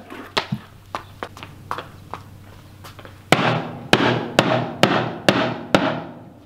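A hammer striking a painted box six times, about two blows a second, each a sharp knock with a short ring, after a few seconds of faint clicks. The box holds and does not break open.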